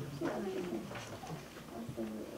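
Low, indistinct murmuring voices with light rustling of paper sheets being handled.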